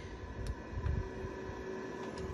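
Low, uneven rumble of room and handling noise with a faint steady hum, and a single light click about half a second in, a button being pressed on the CD player.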